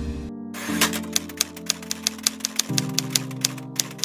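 Typewriter key-click sound effect, a quick even run of about five clicks a second starting just under a second in, over background music with held chords.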